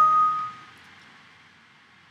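Windows 7 alert chime sounding as a warning dialog pops up. It rings out and fades within the first half second or so, leaving faint steady hiss.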